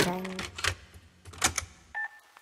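Sped-up Vietnamese pop song: a sung phrase ends on a held note, then the track thins to a sparse break of a few sharp, clicky percussion hits before the music comes back.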